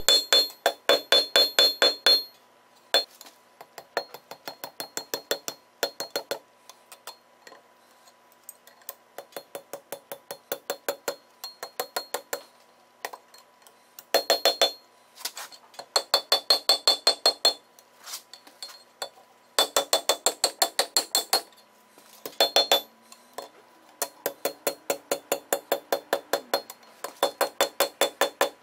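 Hand hammer striking red-hot steel on an anvil, tapering the end of the bar for a scroll. The blows come in quick runs of about four a second, the anvil ringing high and clear under them, with lighter, quieter strikes in between.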